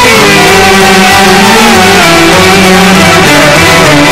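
Loud live Arabic ensemble music: a melody line with pitch slides over a steady accompaniment.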